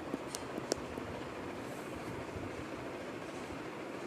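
Steady hiss of a lit gas burner and the covered kadhai of potatoes and onions cooking on it, with a few faint clicks in the first second.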